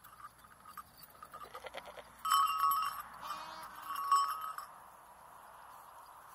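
Goat bleating: a loud call about two seconds in, a shorter wavering call just after, and a second loud call about four seconds in.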